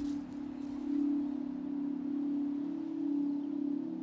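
A sustained low ringing drone, one steady pitch that swells and fades slowly, like a struck singing bowl or a held tone in a film score.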